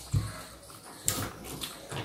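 Close-up mouth sounds of someone eating rice and fish curry by hand: chewing with two louder wet smacks, one just after the start and one about a second in.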